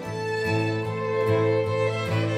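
A string quartet of two violins, viola and cello, with acoustic guitar, playing an old-time fiddle tune. Long held bowed notes sit over a steady cello line.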